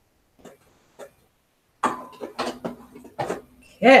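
Domestic sewing machine started up after a bobbin change, running for about a second and a half with a row of sharp clicks over a steady hum, beginning about two seconds in.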